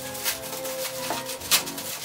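Plastic mailer bag rustling and crinkling as it is pulled open by hand, with a few sharp crackles, the loudest about one and a half seconds in. Background music plays underneath.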